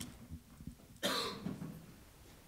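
A single short cough about a second in, preceded by a faint click.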